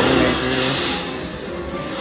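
Fu Dao Le slot machine playing its electronic music and sound effects as the reels stop on a full stack of Fu symbols, the trigger for its jackpot bonus feature. A bright high sparkle comes about half a second in.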